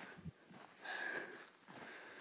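One breath close to the microphone: a noisy exhale or sniff lasting about half a second, about a second in, with a faint low bump near the start.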